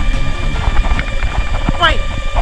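A go-kart driving, heard from a camera mounted on the kart: a loud, steady low rumble with many small knocks and rattles.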